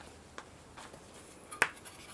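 Quiet room tone broken by two brief clicks: a faint one just under half a second in and a sharper, louder one about a second and a half in.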